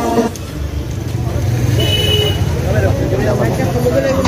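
Busy outdoor market background: indistinct voices over a steady low rumble like a vehicle engine, with a short high tone about halfway through.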